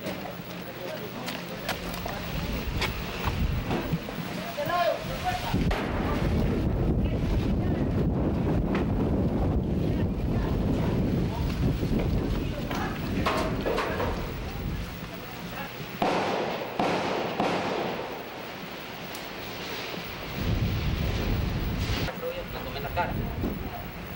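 Wind rumble on a camcorder microphone with indistinct voices, and a sudden sharp crack about sixteen seconds in.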